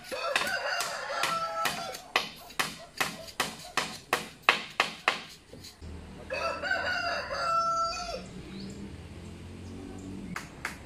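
A rooster crows twice, once near the start and again in the second half, each call ending on a long held note. Through the first half, sharp hammer blows land about two a second on the bamboo coop frame, stopping about halfway through, with a low hum rising behind the second crow.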